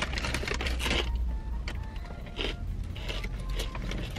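Crunching of plant-based pork rinds being chewed: a quick run of crisp crackles, densest in the first second and sparser after, over a steady low hum.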